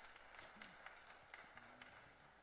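Faint applause from a church congregation, many scattered claps that gradually die away.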